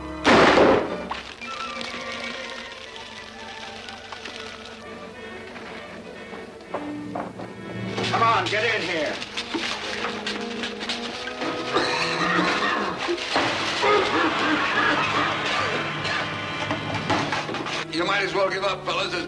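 A single gunshot right at the start, followed by a dramatic film score with voices under the music later on.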